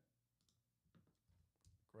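Near silence broken by a handful of faint, short computer keyboard and mouse clicks.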